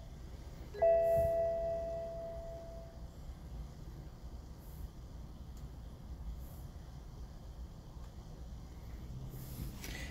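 A BMW dashboard warning chime sounds once about a second in and rings out over about two seconds. No engine cranking or running follows, only a faint low hum: the engine fails to start because the starter lock is still active after the new FEM was programmed.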